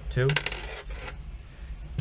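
A small metal takedown pin dropped onto a wooden tabletop, giving a short cluster of light metallic clicks about half a second in.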